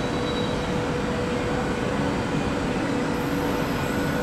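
SBB RABDe 500 ICN electric tilting train rolling slowly into the platform: a steady low rumble with a thin, even hum.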